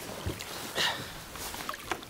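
A kayak moving off in shallow water: light water splashing and lapping around the hull, with small knocks and rustles of handling, and one louder swish about a second in.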